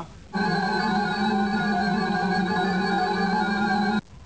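A single held organ-like electronic chord. It starts a moment in, stays level without changing pitch, and cuts off suddenly.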